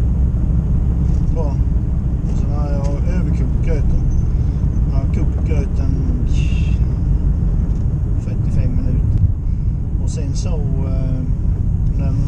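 Steady low rumble of engine and tyre noise inside a moving car's cabin, with a man's voice breaking in briefly several times.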